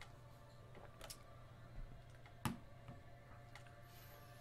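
Quiet room tone with a steady low hum and a few scattered light clicks, the sharpest about two and a half seconds in.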